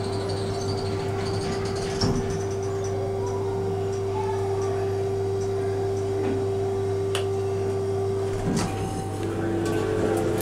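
Steady hum with a clear single tone inside a hydraulic elevator car standing with its doors open, over the chatter of a busy crowd in the lobby. There is one knock about two seconds in, and the tone cuts off shortly before the end.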